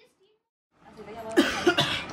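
Near silence, then, as room noise comes in under a second in, a person coughs loudly a few times with voices around them.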